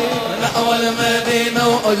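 Male chorus chanting an Arabic devotional hymn in unison, the voices holding long sustained notes.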